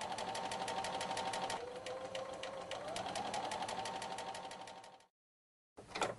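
Electric sewing machine stitching a seam: a steady motor hum with rapid, evenly spaced needle ticks. The motor slows briefly in the middle, picks up again, then cuts off about five seconds in.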